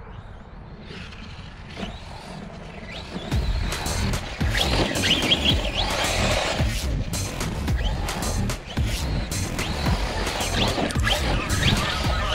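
Arrma Kraton 6S BLX RC truck's brushless motor whining and its tyres churning the dirt as it is driven hard, getting loud about three seconds in.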